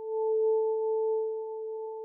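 A steady electronic sine tone with a fainter tone an octave above it, swelling up in the first half second and then slowly fading.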